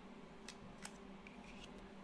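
Faint handling of a stack of Panini Contenders basketball trading cards as one card is slid off another: a couple of soft clicks about half a second and just under a second in.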